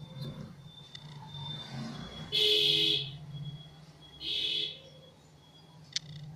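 Two honks of a vehicle horn, the first lasting under a second about two and a half seconds in, the second shorter about four seconds in, over a steady low hum.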